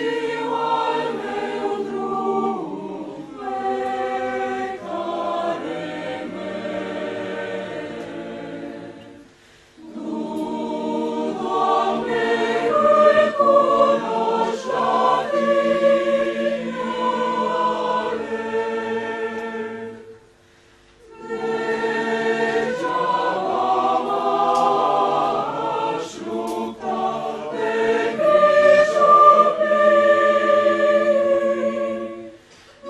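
Church choir singing a sacred song, in long phrases with short breaks about nine and twenty seconds in.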